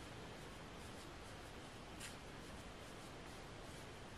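Faint, soft scraping of a silicone spatula stirring dry flour and baking powder in a metal bowl, with a light tap about two seconds in.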